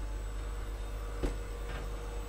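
Steady low hum of engine-room equipment, with a faint high whine over it. A single soft tap comes a little past a second in.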